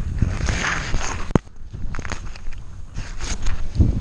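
Rustling and shuffling of parachute harness, lines and canopy fabric as tandem skydivers sort out their gear on the grass. A single sharp click, like a buckle or clip, comes about a second and a half in.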